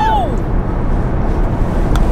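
Steady low road and engine rumble inside a moving car's cabin. A drawn-out voiced exclamation trails off in the first half second.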